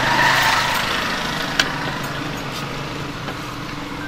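A motor running steadily at idle in the background, slowly fading, with a single click about one and a half seconds in.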